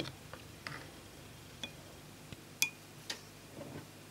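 A handful of faint, sparse clicks and taps from a metal teaspoon and a clear plastic cup being handled while dry plaster putty is spooned into the cup. The loudest tap, a little past halfway, rings briefly.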